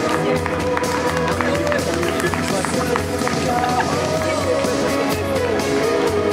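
Live amplified band playing: electric guitar, bass guitar and drum kit, with a woman singing lead.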